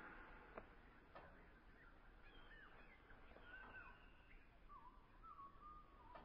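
Faint birdsong: short whistled notes that glide up and down, starting about two seconds in, over a quiet background with two soft clicks in the first second or so.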